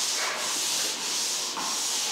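A steady hiss that swells and fades about twice a second: ongoing rubbing or sanding-type noise in the background.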